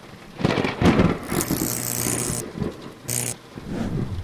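Title-sequence sound effects: a thunder-like rumble, with a loud rush of hiss about a second in and a short swish near three seconds.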